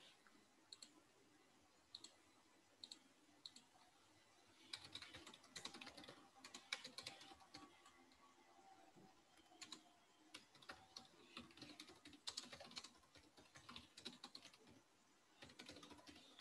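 Faint typing on a computer keyboard heard through a video-call microphone: a few scattered key clicks, then two runs of rapid typing from about five seconds in.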